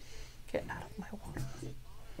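Faint, indistinct murmuring voice over a low steady hum.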